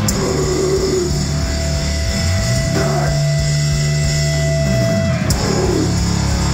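Death metal band playing live and loud: distorted electric guitar and bass holding heavy low chords over a drum kit, with a high note held for a couple of seconds in the middle.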